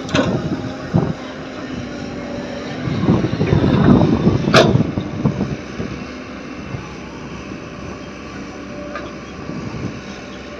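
Komatsu PC130 hydraulic excavator's diesel engine running steadily, rising under load for about two seconds in the middle as the machine swings and digs into sand. A couple of knocks near the start and one sharp metallic clack a little before halfway.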